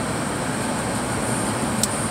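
Steady road noise inside a moving car's cabin at highway speed: tyre and engine noise, with a single light click near the end.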